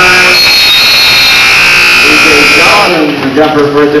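Gym scoreboard buzzer sounding the end of the third quarter: one long steady blast that cuts off a little under three seconds in. Voices shout after it.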